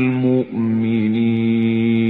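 Qur'an verse chanted melodically in Arabic (tilawah) by a single voice: a held note, a short break about half a second in, then one long sustained note.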